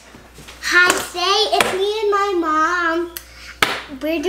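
A young girl's voice in a drawn-out singsong for about two seconds, then a single sharp smack about three and a half seconds in.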